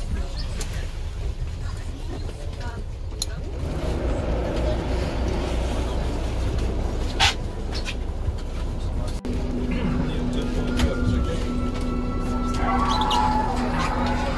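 Low, steady rumble inside a coach bus cabin, with passengers talking. About nine seconds in, background music with long held tones comes in over it.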